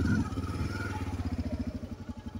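Single-cylinder Honda XRE motorcycle engine idling at a standstill, with an even firing beat.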